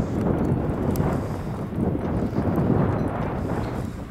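Wind buffeting the microphone: a loud, irregular low rumble that eases off near the end.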